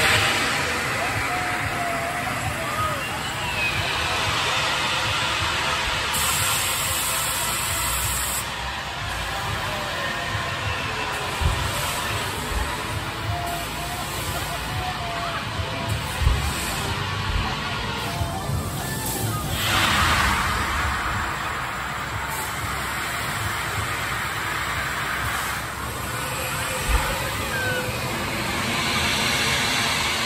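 Amusement-park din of voices and background music over a steady rushing noise, with a louder whooshing rush about twenty seconds in as a drop tower's gondola falls.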